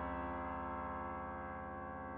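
Final soft piano chord held under a fermata, ringing on and slowly dying away at the end of the piece.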